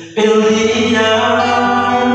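A man singing a slow, drawn-out phrase with a strummed classical guitar behind him; a new phrase begins just after the start after a brief dip.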